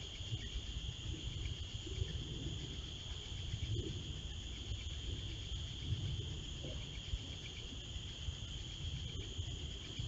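A steady chorus of crickets: a continuous high-pitched trilling that does not change, over a low, uneven rumbling noise.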